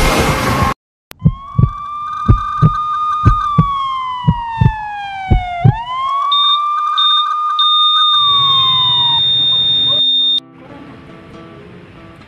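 A short, loud burst of noise, a moment's silence, then an emergency-vehicle siren wailing: its pitch falls slowly, swings back up, holds and begins to fall again. A series of sharp thumps sounds under the first half. The siren cuts off suddenly near the end, leaving a faint hiss.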